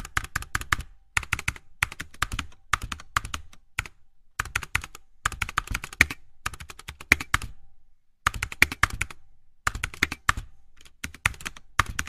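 Computer keyboard typing sound effect: quick runs of key clicks in clusters, separated by short pauses.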